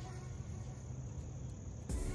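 A steady high-pitched insect trill over faint background music, with a sudden knock just before the end.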